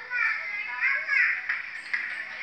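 Young children's high-pitched voices, lively and quickly rising and falling in pitch, heard through an old home-video recording with a dull, narrow sound.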